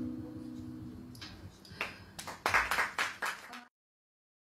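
The last acoustic-guitar notes of the song ring out and fade. About a second in, a small audience begins clapping, a few claps first and then brief, denser applause, which cuts off abruptly near the end.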